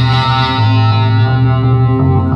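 Hard rock instrumental passage: distorted electric guitar holding sustained notes, with the lowest notes shifting down about half a second in.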